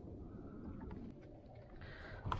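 Faint steady low rumble of wind and water around a small boat on calm water, with a couple of light ticks about a second in.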